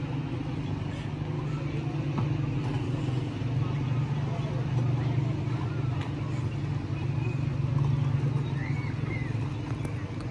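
Steady low motor hum, like an engine running, with faint voices in the background.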